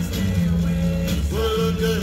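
A 1961 rock and roll acetate record playing on a turntable: a band with a steady bass line and drums, and a held note coming in about a second and a half in.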